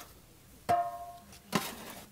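Shovel tipping loose soil over a freshly made grape graft: a sharp knock about a second in that rings briefly, then a second thud near the end with the rustle of soil landing.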